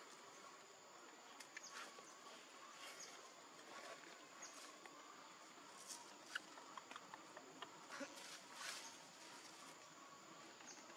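Near silence: faint outdoor ambience with a steady high insect hum and scattered soft clicks and rustles.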